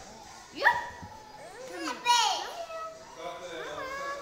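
Young children squealing and yelping in play: a sudden high squeal about half a second in, louder wavering squeals around two seconds, and a shorter rising cry near the end.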